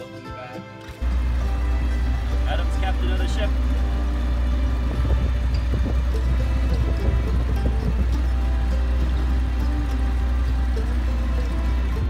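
Background music, then, about a second in, a sudden loud, steady low rumble from a moving motorboat under way on the water, with the music going on over it.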